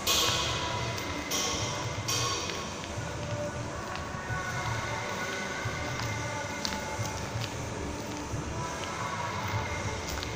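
A steady low rumble with faint music over it, and two short hissing bursts in the first two seconds.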